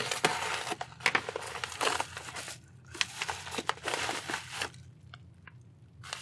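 Hobby knife slitting open a padded paper mailer, with crackling, tearing and crinkling of the envelope as it is opened and handled; the noise thins out near the end.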